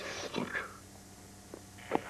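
A boy's voice trailing off in a breathy, hissing sound in the first half-second, then a couple of faint short taps near the end.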